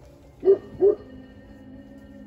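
A newborn Great Pyrenees puppy yelping twice in quick succession, two short cries just after its birth.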